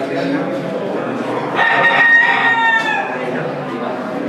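A gamecock crowing once, starting about a second and a half in and lasting just over a second, its pitch dropping at the end.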